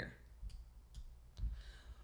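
A few faint computer mouse clicks about half a second apart, pressing an on-screen button.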